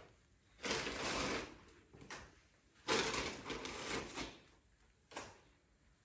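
Plastic packaging and a woven shopping bag rustling and crinkling as grocery packets are pulled out and set down. There are two longer bouts of rustling, starting about half a second in and about three seconds in, with short rustles between them.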